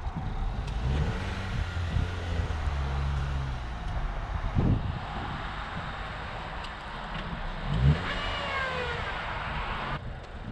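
Honda Fit's 1.5-litre four-cylinder engine revving as the car drives through snow and pulls up. The engine is strongest in the first half, and there is a sharp thump about eight seconds in.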